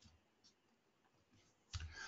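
Near silence, with two faint short clicks in the first half second. Near the end a faint low sound, likely a breath, leads into speech.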